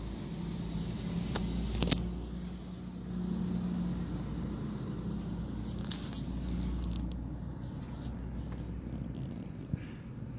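A car running, a steady low hum of engine and road noise with a few faint clicks.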